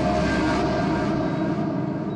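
A whoosh sound effect from a dramatic background score, swelling about half a second in and dying away, over a low sustained music drone.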